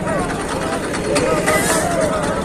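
Overlapping voices of several people calling out, over a steady low rumble.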